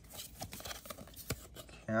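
Faint rustling and a few light clicks of Pokémon trading cards being handled and slid against each other as a just-opened booster pack's cards are pulled out.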